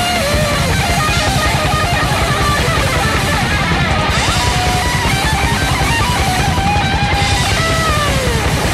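Heavy metal demo recording: distorted electric guitars playing a lead line that slides in pitch, over fast, dense drumming.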